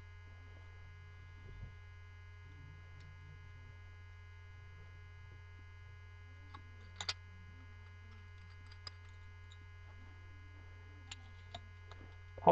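Steady low electrical mains hum on the recording, with a few faint, short clicks of small objects being handled, a pair about seven seconds in and a few more near the end.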